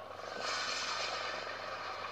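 Movie trailer soundtrack playing: music under a steady hissing rush that comes in about half a second in.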